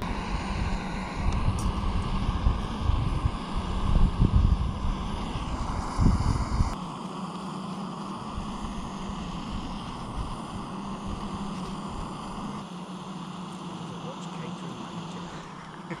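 Small gas-canister camping stove burning steadily under a saucepan of water, a continuous hiss. Wind buffets the microphone for the first six or seven seconds, then eases.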